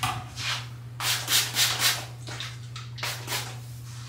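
Water and leave-in conditioner being worked into the ends of a curly wig: a series of short rustling strokes, several in quick succession, over a steady low hum.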